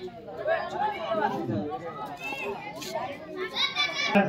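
Indistinct chatter of several people talking at once in the background, with one voice rising higher near the end.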